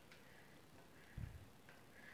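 Near silence, broken by a single soft, low thump a little past the middle.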